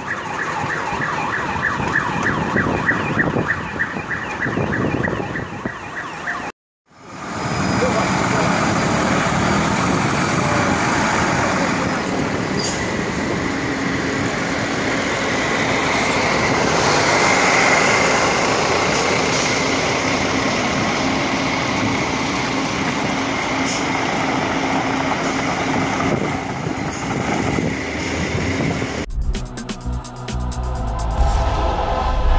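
An emergency siren going up and down for about the first six seconds, cut off suddenly. After a short gap comes steady engine and street noise with a faint steady whine. A music sting begins just before the end.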